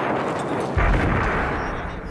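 Battle sounds of gunfire and artillery: a dense rumble of firing with a heavy boom about three-quarters of a second in that dies away slowly.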